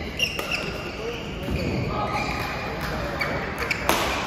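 Badminton rally: sharp cracks of rackets striking a shuttlecock, the loudest just before the end, with short high squeaks of shoes on the court floor and voices, echoing in a large hall.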